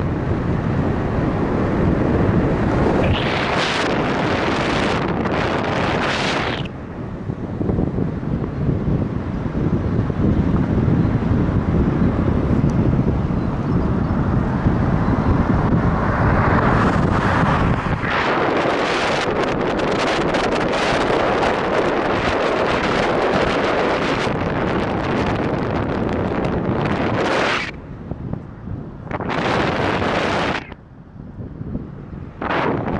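Wind rushing over the microphone of a camera mounted on the outside of a moving car, loud and steady. The rush turns brighter and harsher for a few seconds early on and again through much of the second half.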